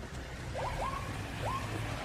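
Film soundtrack ambience: a steady low rumbling, rushing noise, with three short rising chirps in the first half.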